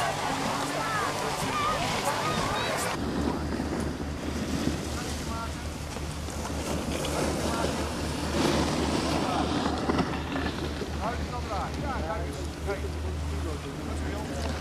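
Children's voices on a busy ski slope, ending abruptly about three seconds in. After that, steady wind rumble on the microphone with a few faint distant voices.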